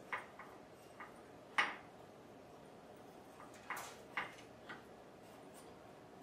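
Light clicks and taps as dry Pu-erh tea leaves are pushed with a wooden tea pick from a porcelain tea holder into a small clay Yixing teapot. There are about seven short clicks: the loudest comes about a second and a half in, and a close group falls around four seconds.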